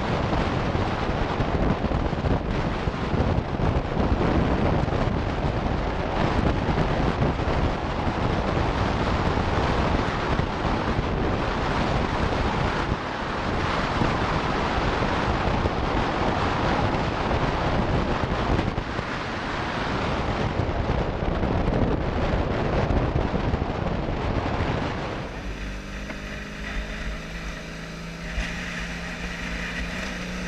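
Heavy wind buffeting on the microphone of a camera mounted on a moving BMW motorcycle, with the engine under it. About 25 seconds in the wind noise drops away and the engine's steady hum comes through.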